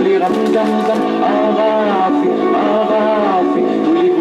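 Music with a sung melody over a steady accompaniment, for a group circle dance, with a few hand claps in the first second.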